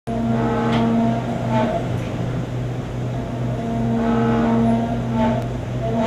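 Engine running, its note rising and falling in the same pattern about every three and a half seconds.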